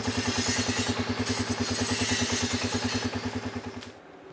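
An engine running steadily with a fast, even putter of about ten beats a second, fading out near the end.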